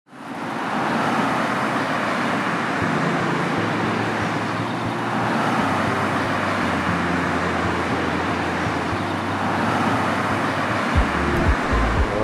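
Road traffic on a multi-lane city street: a steady wash of tyre and engine noise from passing cars, fading in at the start.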